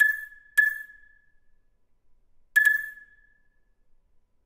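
Three sharp, high notes on the same pitch in a contemporary ensemble piece: one at the start, one about half a second later and one just before three seconds in. Each is struck and rings out briefly, with quiet between them.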